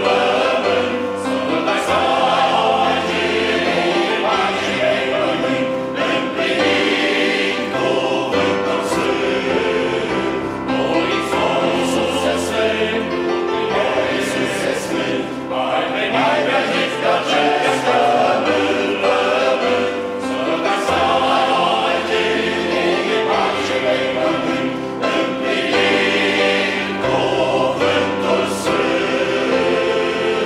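A large men's choir singing unaccompanied in several-part harmony, the voices sustained in continuous chords at a steady, full level.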